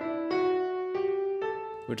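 Piano tones from a keyboard playing a Dorian-mode scale, a few held notes climbing step by step. The raised sixth scale degree gives it a slightly brighter sound than natural minor.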